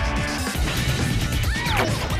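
Title jingle of a TV show intro: loud, upbeat music with heavy bass and cartoon sound effects, including short pitch glides near the end.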